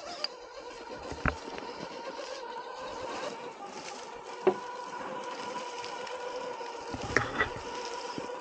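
Electric motor and geared drivetrain of an Axial SCX10 Pro RC rock crawler whining steadily as it crawls over rocks and leaf litter, with several sharp knocks as it strikes rock, the loudest about a second in, at four and a half seconds and twice near the end.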